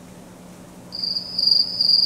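A single high-pitched steady trill or beep that starts about a second in, pulses slightly in loudness, and stops suddenly.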